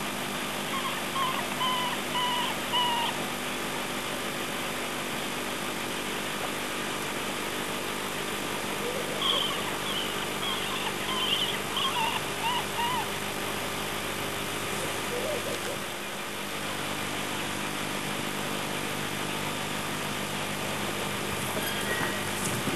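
Birds calling in short chirping phrases: a run of notes a second or two in, and a longer bout about nine to thirteen seconds in, over a steady low hum.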